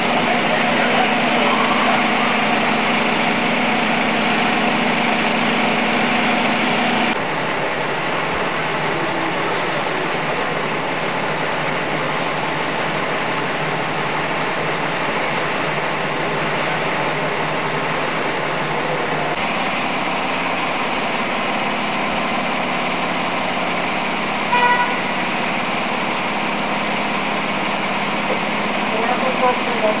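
Steady drone of idling fire-truck diesel engines mixed with street din, shifting abruptly twice. A brief pitched blip sounds about three-quarters of the way through.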